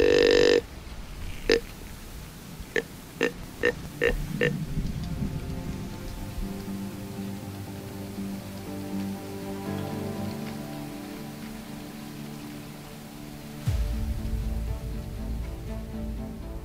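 Deer grunt call blown through a tube call: one longer grunt, then six short grunts over the next few seconds. From about five seconds in, background music with held notes takes over, and a deeper bass joins near the end.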